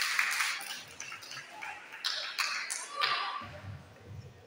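A pause in the children's singing, filled with scattered rustles and taps at a moderate level, with no singing or music.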